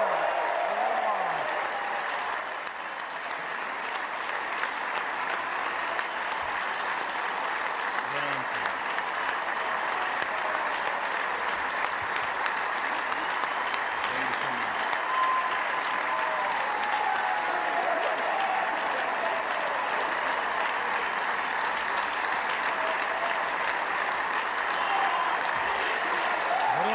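A large crowd of standing people applauding steadily for the whole stretch, a long ovation, with a few voices heard through the clapping.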